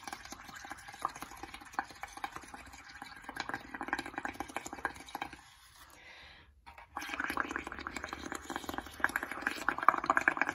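Blowing through a straw into a bowl of dish-soap, water and paint mix: steady bubbling with many small pops as a mound of bubbles rises. It stops for about a second and a half around six seconds in, then starts again louder.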